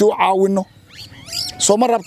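A man talking, with a pause about a second in during which a short, high gliding call is heard.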